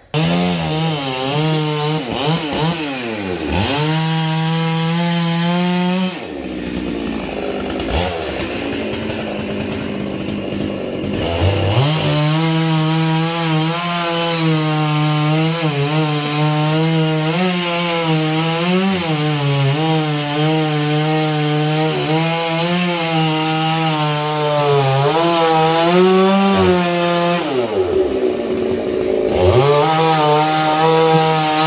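Chainsaw cutting through the trunk of a dầu (yang) tree. The engine revs up and down for the first few seconds. From about twelve seconds in it runs at high speed through the wood, its pitch wavering and sagging briefly as the chain bites.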